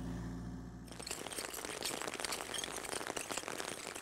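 Rain falling steadily, a dense pattering of many small drops; a low hum cuts off about a second in.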